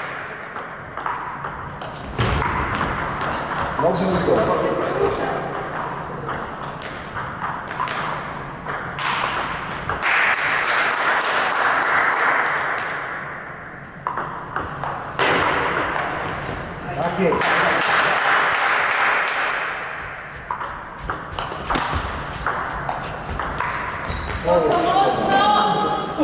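Table tennis ball clicking off the bats and table in quick rallies, with short breaks between points.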